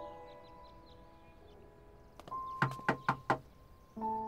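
Knuckles knocking on a door: four quick knocks in about three quarters of a second, over soft background music.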